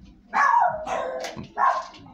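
Dogs barking at visitors: a longer bark a third of a second in, then a short one near the end.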